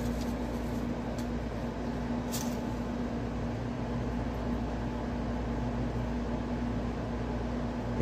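Steady hiss of rain with a constant low hum running underneath it.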